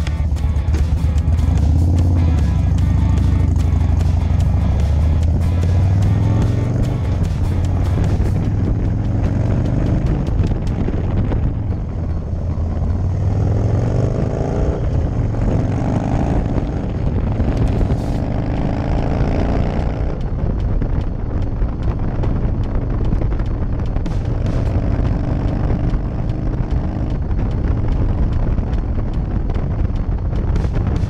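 Harley-Davidson FXDC Dyna Super Glide Custom V-twin pulling away and accelerating up through the gears, its pitch rising again after each shift, then running at highway speed with wind rushing over the microphone.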